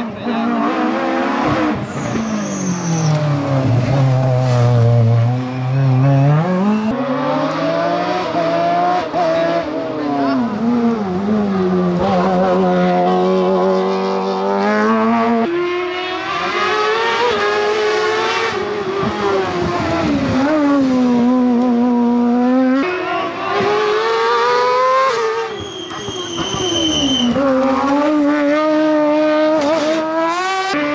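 Hillclimb racing cars, a closed GT car and open sports prototypes, accelerating uphill in succession, their engines revving up and dropping back through gear changes. There is a brief high squeal near the end.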